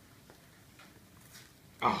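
Faint handling of a keyboard cover's packaging, with a few small ticks. Near the end comes a sudden loud exclamation, "Oh!".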